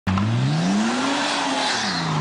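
A car engine revving, heard as the channel's intro sound clip. The pitch climbs over about the first second and then drops away, over a loud rushing noise.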